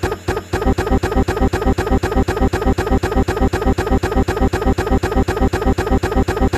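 Computer sound output stuck in a stuttering loop: one short fragment with steady pitches repeating rapidly, several times a second, in an even buzzing rhythm. This is typical of a crashing or freezing system.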